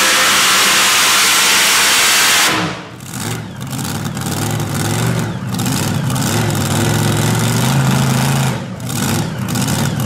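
Mini rod pulling tractor's engine at full throttle, cut back abruptly about two and a half seconds in as the pull ends, then running at lower revs with uneven blips of the throttle.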